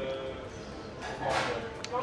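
A man sipping a drink through a straw: a short noisy sip about halfway through, then a small sharp click of the lips.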